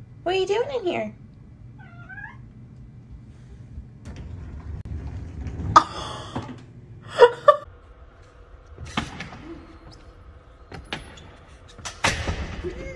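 A cat meowing several times in a shower stall, loudest about six and seven seconds in, followed by a couple of short knocks.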